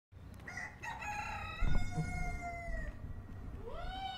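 Rooster crowing: one long crow held for about two seconds, then a second crow beginning near the end.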